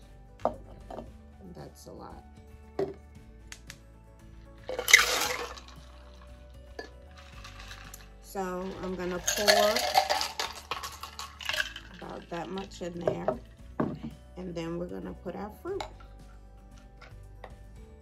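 Ice clinking and rattling in a clear shaker cup, with light glass-on-glass clinks. Then a mixed drink is poured over ice into a glass, running for a few seconds about halfway through.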